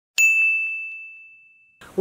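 A single bell-like ding sound effect on a numbered title card: one sharp strike, then a clear high tone that fades away over about a second and a half.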